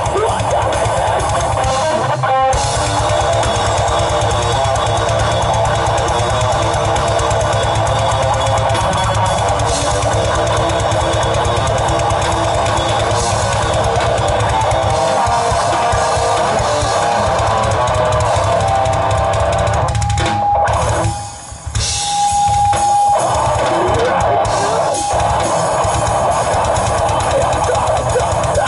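Metal band playing live: distorted electric guitars, bass guitar and a pounding drum kit with vocals. The band cuts out for about a second around 21 seconds in, then comes back in at full volume.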